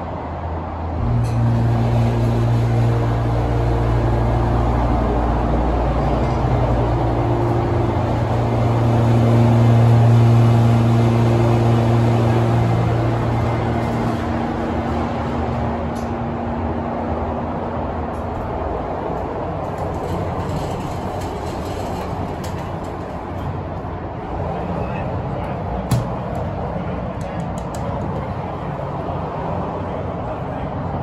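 Montgomery hydraulic elevator's pump motor starting about a second in with a loud steady hum and running as the car rises, then fading out about halfway through. Freeway traffic noise comes through the smashed car windows throughout, with one sharp click near the end.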